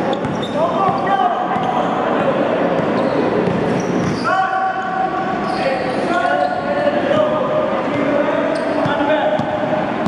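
Basketballs bouncing on a gym floor, with several children's voices shouting and calling out, in a large echoing hall.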